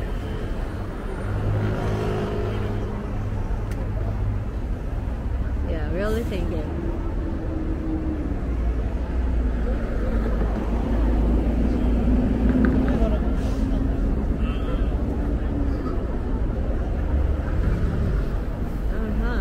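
Road traffic on a busy city street: buses and cars driving past a crosswalk, their engines a continuous low drone with a steady hum that grows a little louder in the middle.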